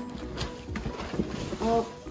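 Cardboard gift box and tissue paper being handled while a present is unpacked, a few scattered crackles and knocks. A short voiced 'oh' comes near the end.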